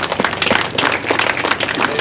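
Crowd applauding: many overlapping hand claps.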